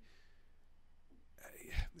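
Faint room tone, then about one and a half seconds in a short breathy, unvoiced noise with a low bump on the microphone: a speaker drawing breath close to the mic before going on talking.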